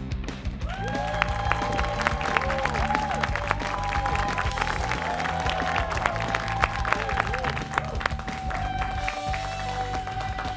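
Upbeat game-show theme music with a steady beat, with clapping and cheering over it.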